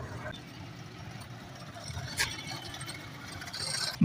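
Quiet outdoor background noise: a faint steady haze with one short click about two seconds in.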